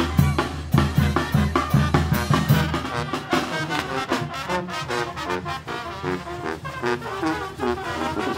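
Marching brass band playing a tune: trumpets, trombones and sousaphone over a bass drum and snare drum. The drum strokes are strong and even for the first couple of seconds, then the brass melody carries on over a lighter beat.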